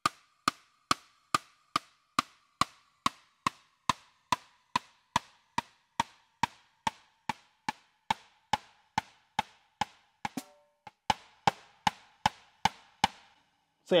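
Electronic snare pad of an Alesis Strata Prime struck steadily with a stick, a little over twice a second, playing a 13-inch brass snare sample. The snare's ring drops slowly in pitch as its tuning is turned down, toward a lower, deeper snare sound.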